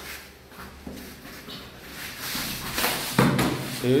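Two wrestlers' bodies scuffling and bumping on foam floor mats: a few dull knocks and a stretch of rustling friction, with a short vocal sound near the end.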